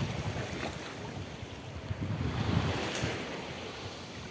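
Wind buffeting the microphone over small sea waves lapping and sloshing in shallow water, a steady rushing noise that swells a little midway.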